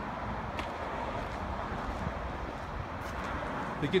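Steady outdoor background noise, a low rumble and hiss, with a faint click about half a second in; a man's voice starts just at the end.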